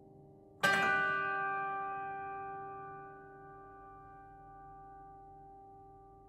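Grand piano: one loud chord struck about half a second in, left to ring and fading slowly over a couple of seconds into a long, quiet resonance.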